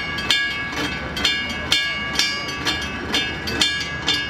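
Bridge warning bell at a Chicago bascule bridge gate, struck about twice a second in a steady ringing clang while the barrier arms come down across the roadway before the bridge lifts.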